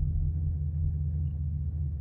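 Steady low rumble of a pickup truck's engine idling, heard from inside the cab.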